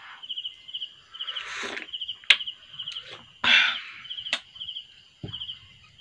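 A cricket chirps in short, evenly repeated trills. Over it come two noisy sips of hot coffee and two sharp clinks of a spoon against a ceramic mug, the first clink the loudest sound.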